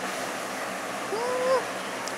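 Electric fan running with a steady rushing noise. About a second in, a woman's voice gives a short rising hum.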